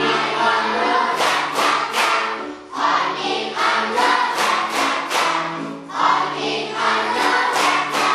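A class of children singing a song together, clapping their hands in a steady beat of about two claps a second.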